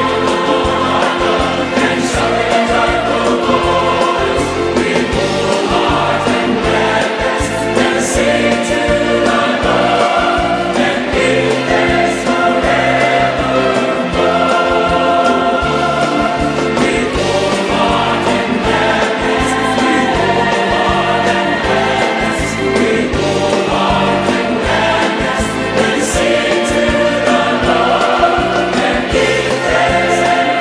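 A massed choir of many voices singing a hymn of praise, with the words 'praise the name of the Lord our God' and 'and give thanks forevermore', loud and continuous.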